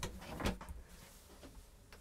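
Two light knocks about half a second apart, with faint rustling: a man sitting down on a caravan's cassette toilet. The rest is nearly quiet.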